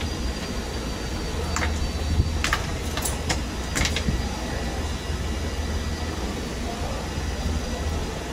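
Steady low machinery hum, with several short sharp clicks in the first half as small parts and wiring are handled.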